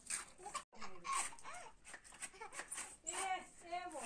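Children's voices calling and chattering, some calls high-pitched, with a brief dropout of all sound under a second in.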